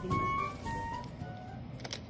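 Background music: a melody of held notes that fades out about halfway through, leaving faint room sound with a short click near the end.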